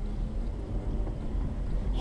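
Steady low rumble of a car driving slowly, heard from inside the cabin: engine and road noise with no sudden events.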